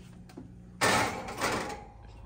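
Oven door of a gas range being opened to put a cast-iron skillet in: a single scraping rush lasting under a second, starting just under a second in.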